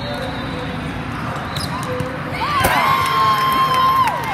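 Indoor volleyball rally: ball contacts and footwork echo in a large hall. About two and a half seconds in comes a sharp hit, then a burst of high shouting and cheering from players and spectators as the point ends, with one high voice held for over a second.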